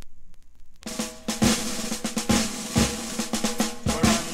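Start of an Irish band's song recording: faint hiss and scattered clicks, then about a second in the band comes in, led by snare drum rolls and drum hits over bass and guitar.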